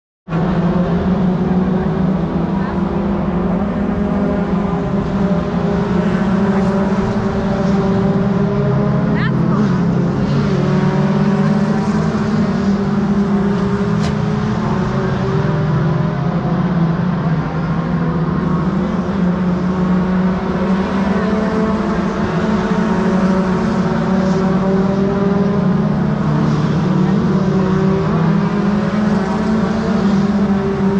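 Race car engine idling steadily and loudly at a constant pitch, with no revving.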